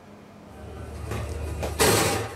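A news programme's transition sound effect: a low rumble that swells over about a second and a half, ending in a loud noisy whoosh-like hit near the end.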